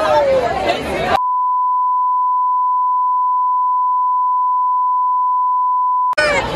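Voices and crowd chatter for about a second, then an edited-in censor bleep: a single steady tone that blanks out all other sound for the rest.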